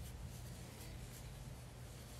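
Faint soft rustling and rubbing as a 3 mm metal crochet hook draws Alize Superlana Klasik yarn through the stitches, over a steady low hum.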